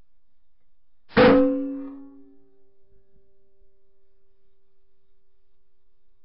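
A single shot from an AGT Vulcan 3 .22 PCP air rifle about a second in: a sharp report that fades over about a second, with a ringing tone that lingers faintly for several seconds.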